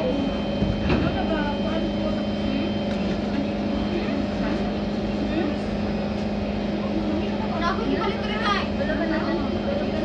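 Steady low hum of a Singapore MRT train standing at a station platform, heard from inside the carriage. Faint voices come in near the end.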